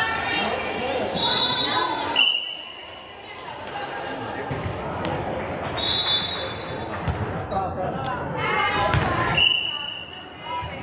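Youth volleyball play in a large gym: players and spectators calling out, a whistle blown in several short blasts, and a few thuds of the ball being played.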